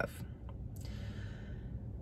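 A woman's soft sigh, a breathy exhale lasting about a second, starting just under a second in, over a faint low rumble.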